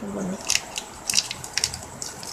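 Stiff, shiny folded ribbon crackling in the hands as the finished ribbon durian is squeezed and shaped, in a few sharp crinkles about half a second apart.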